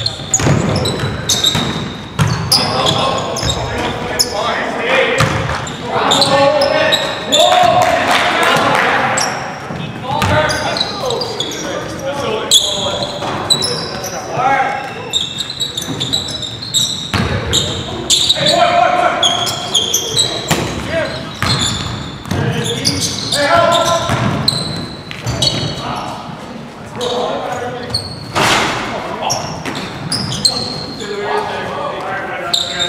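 Basketball game sounds echoing in a gym: the ball bouncing on a hardwood floor, sneakers squeaking, and players calling out to each other.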